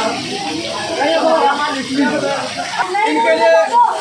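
Several people's voices talking and calling out over one another, with steady rain hissing behind them.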